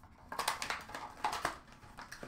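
Trading cards and their packaging being handled: an irregular run of light clicks and rustles.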